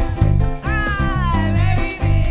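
Live upbeat gospel praise music: a group of singers with microphones over a band, with a high note that slides down in pitch about halfway through.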